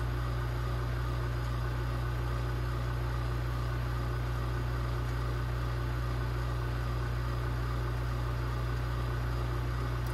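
Sputter coater running mid-cycle: a steady, unchanging low mechanical hum from its vacuum pump, holding the chamber at low argon pressure while the plasma sputters gold onto the samples.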